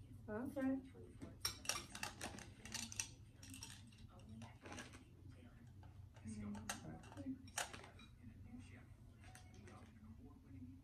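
Thin metal tubes of a flat-pack shoe rack clinking and tapping against each other as they are picked up and handled: a quick run of light metallic clicks in the first half, a few more later.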